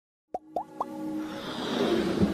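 Sound effects of an animated logo intro: three quick rising pops in a row, then a swelling whoosh that builds over a held synth tone.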